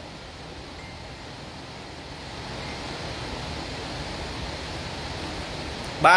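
A steady rushing hiss with no distinct events, growing slightly louder toward the end.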